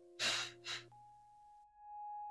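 Two short puffs of breath blown into silicone resin molds to clear loose nail powder, the second shorter than the first.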